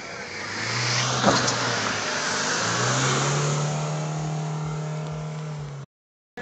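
Off-road jeep engine revving hard under load as it drives through a muddy water pit, its pitch climbing twice and then holding high, with a hiss of splashing and a sharp knock about a second in. The sound cuts off suddenly near the end.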